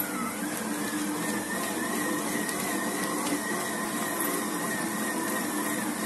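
Electric stand mixer running steadily, its dough hook kneading a stiff bread dough in a steel bowl: an even motor hum with a high whine over it.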